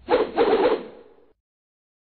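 Short logo sting sound effect: two quick pitched notes, the second longer, fading out by about a second and a half.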